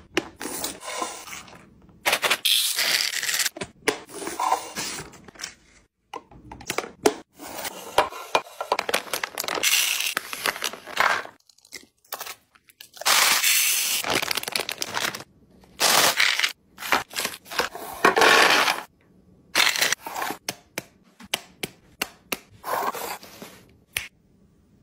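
Packaging and containers being handled during a restock: a busy run of crackling, scraping and clicking noises in short bursts, broken several times by sudden stops to silence.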